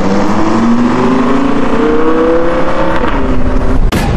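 Loud engine-like sound climbing steadily in pitch for about three seconds, then a sharp hit just before the end.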